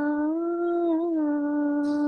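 A young woman singing a prayer song unaccompanied, holding one long note that rises slightly and then stays level: the closing held note of the song.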